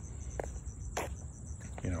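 Crickets chirping in a steady, high-pitched trill, with two faint taps about half a second and a second in.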